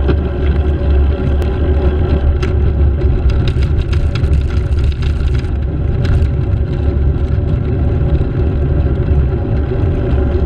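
Steady wind and road noise from riding at speed in traffic, with a low rumble and an engine-like hum. A run of short sharp clicks and rattles comes between about two and six seconds in.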